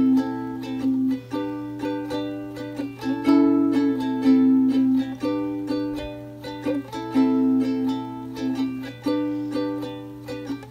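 Ukulele strumming chords in an instrumental passage with no singing: a chord struck roughly every second and left to ring, over a steady low hum.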